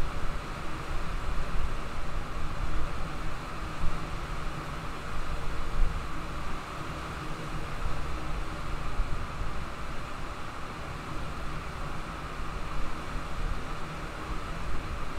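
Steady background noise with a low rumble and hiss, wavering a little in loudness but with no distinct events.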